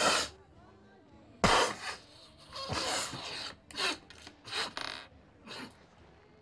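People snorting lines of cocaine through the nose: a run of about seven sharp, hissing sniffs, the loudest about a second and a half in and one longer drawn-in snort a little later.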